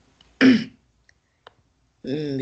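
A person clears their throat once, a short burst about half a second in that falls in pitch, followed by a couple of faint clicks.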